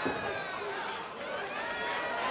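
Boxing-arena crowd shouting, many voices at once, as a fight is pressed toward a stoppage. A single sharp smack near the start, where a gloved punch lands to the head.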